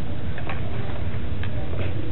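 A few irregular sharp clicks over a steady low hum.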